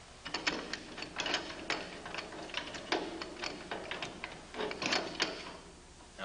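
Steel clamping mechanism of a Liftomatic drum handler being slid into the unit frame over the spider arms: a run of irregular metal clicks, clanks and scrapes as it seats and locks into place.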